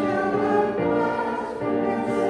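A hymn being sung: a woman's voice leading, with fuller choir-like voices and instrumental accompaniment, moving through long held notes.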